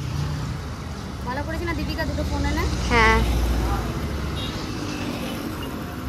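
Street traffic noise with a motorbike passing, loudest about three seconds in.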